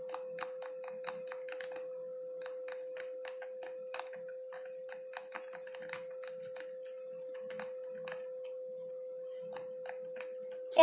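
Small irregular clicks and taps of a toothpick stirring glue slime in a plastic container, over a steady faint single-pitched hum.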